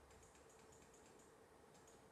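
Near silence with faint, quick clicking from a computer mouse: a rapid run of clicks, then two more near the end, over a faint steady hum.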